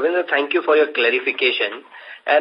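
Speech only: a person talking over a conference-call phone line.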